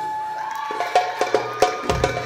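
Live Egyptian folk ensemble: a held reed-pipe note fades away, then about halfway in a run of sharp hand-drum strokes starts, about five a second, over a low drone.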